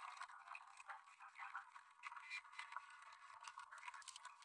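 Faint, scattered hand-clapping: many short, uneven claps with no steady rhythm, thin-sounding as if heard through a video-call stream.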